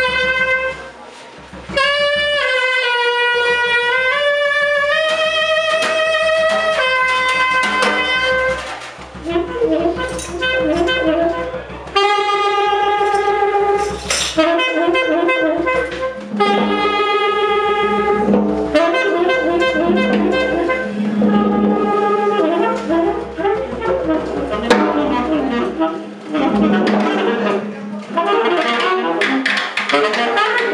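Free jazz improvisation on tenor saxophone with drum kit. The saxophone holds long notes that bend in pitch for the first several seconds, then breaks into quicker, choppier phrases, while the drums and cymbals play under it.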